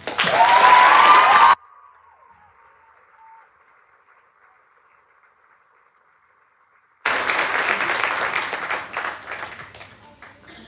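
Audience applauding loudly after a choir song. The applause cuts off abruptly after about a second and a half, leaving a few seconds of faint room tone. It starts again suddenly about seven seconds in and dies away near the end.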